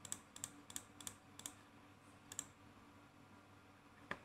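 Faint clicking at a computer: about six short, light clicks in the first two and a half seconds, then near quiet over a faint low steady hum.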